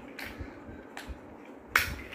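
Plastic building blocks clicking and knocking together, a few light clicks and then a sharper, louder click near the end.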